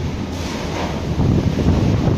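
Strong wind buffeting the microphone over the rush of a rough sea, with a low rumble underneath; a brighter hiss comes in about a third of a second in.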